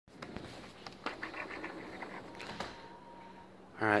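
Faint scattered clicks and rustling handling noise as the phone camera is moved, then a man says "All right" near the end.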